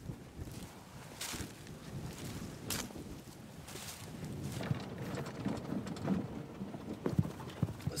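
Footsteps crunching over dry tilled soil clods and corn stalk residue, with irregular rustling and a few sharper crackles.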